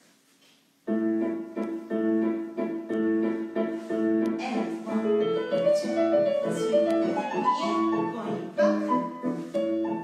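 Piano music for a ballet class starting suddenly about a second in. It plays steady repeated chords under a moving melody line.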